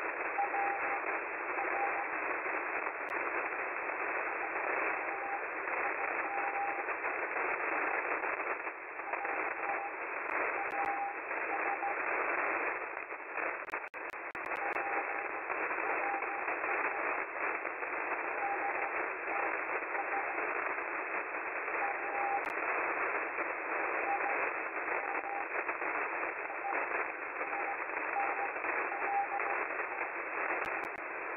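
Shortwave receiver audio in upper-sideband mode: a steady hiss of band static, with a faint Morse code tone keyed in dots and dashes beneath it. This is an unidentified CW signal near 8000 kHz.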